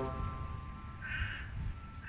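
A crow cawing: a short harsh call about a second in and another at the end, over a low rumble, as the background music drops away.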